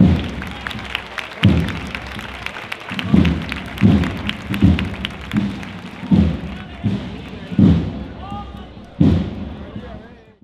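Bass drum of a cornet-and-drum band beating a steady walking pace, about one stroke every three-quarters of a second, over crowd chatter.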